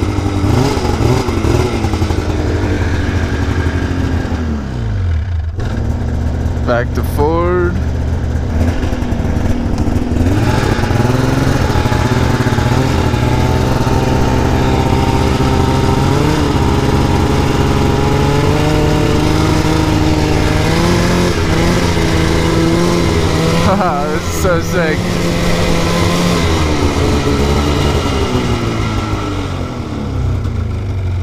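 2004 Polaris RMK 800 snowmobile's two-stroke engine running under way. Its revs drop about four seconds in, climb again around ten seconds and hold steady as the sled moves off, then ease briefly near the end.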